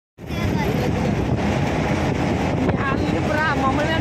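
Wind buffeting the microphone and the steady road and engine noise of a moving truck, heard from its open cargo bed.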